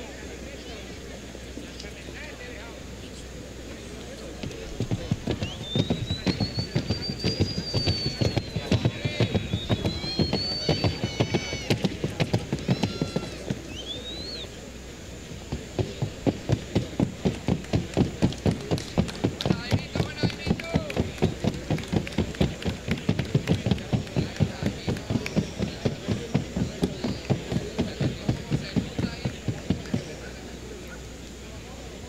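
Hooves of a Colombian trotting mare striking the ground in a fast, even rhythm, stopping briefly about halfway through and then starting again.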